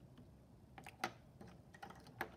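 A few faint, light clicks and taps over quiet room tone, the sharpest about halfway through.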